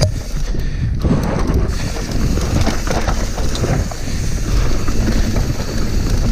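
Mountain bike descending a dry dirt trail: tyres crunching over loose dirt and the chain and frame rattling over bumps, with wind rushing over the microphone.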